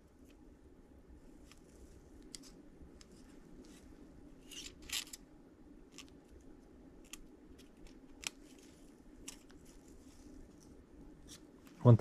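Faint, sparse metallic clicks and short scrapes of a feeler gauge blade being worked between a piston's top compression ring and its groove to check the ring's side clearance, with a slightly louder scrape about five seconds in. The 0.001-inch blade goes in with a nice drag.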